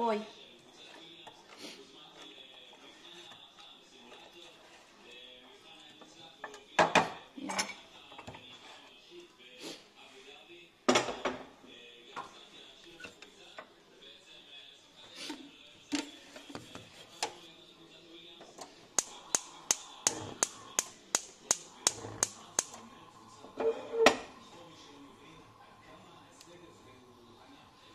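Stainless steel pot and spoon clinking and knocking as the pot of sauce is handled, with a few louder knocks. Near the end comes a run of about fourteen sharp, even clicks, about four a second: a gas stove igniter clicking as the burner is lit under the pot.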